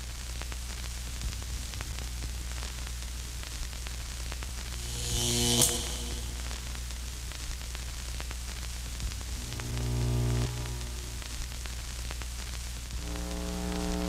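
Opening of a piece for orchestra and live electronics: a steady low electronic drone under a haze of static. A chord of pitched tones swells and cuts off with a bright hiss about five and a half seconds in, a softer swell comes near ten seconds, and held chord tones grow louder near the end.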